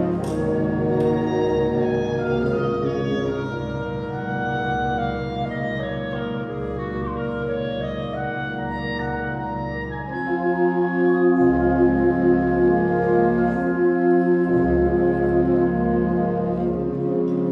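High school symphonic band of woodwinds and brass playing a slow passage of held chords, growing louder about ten seconds in.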